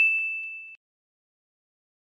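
A bell-like ding sound effect ringing on at one steady high pitch and fading, cut off short less than a second in; then silence.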